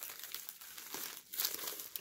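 A thin plastic envelope crinkling and rustling as hands open and handle it, with a brief lull a little past the middle.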